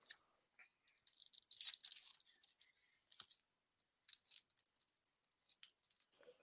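Near silence with faint scattered clicks and a brief soft rustle or crunch about one and a half seconds in.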